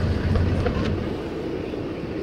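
The 6.7-litre Cummins inline-six turbo-diesel of a 2016 Ram 3500 idling, heard as a steady low rumble from inside the cab. The rumble eases a little about a second in.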